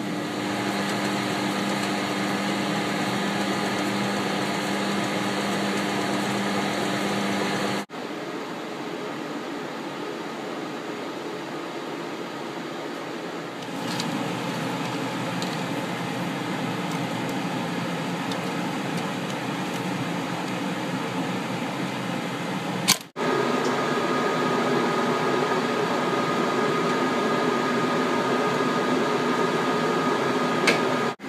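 Steady hum of projection-booth machinery and ventilation fans, with several steady tones in it. The hum changes abruptly twice, at about a quarter and three-quarters of the way through, and a few faint clicks are heard.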